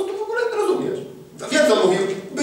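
Speech only: a man preaching in Polish.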